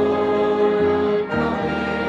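A church hymn: a congregation singing over instrumental accompaniment, in long held chords that change a few times.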